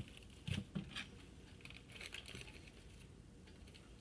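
Faint knife clicks and plastic wrap crinkling as the wrapper is cut and peeled off a partly frozen sausage roll on a cutting board: a few short clicks in the first second, then soft crinkling.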